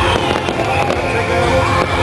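Fireworks bursting overhead, several sharp bangs and crackles, over loud music with a steady bass that accompanies the display.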